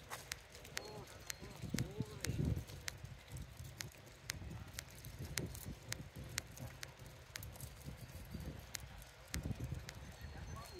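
Walking on a concrete sidewalk: a steady run of sharp clicks, about two a second, over a low outdoor rumble. Faint voices are heard between about one and two and a half seconds in.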